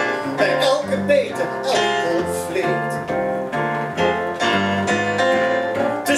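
Live instrumental passage of a song: a keyboard piano playing chords over a plucked double bass line.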